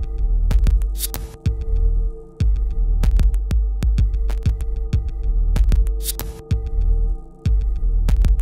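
Minimal electronic music: a deep, throbbing bass drone and a steady held tone, cut through by sharp clicks at uneven intervals. Short bursts of high hiss come about a second in and again about six seconds in, and the bass drops out briefly twice.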